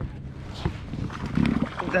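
Fishing reel being cranked while fighting a hooked bass, with scattered small clicks and ticks from the reel and rod handling, and a short low buzz about a second and a half in.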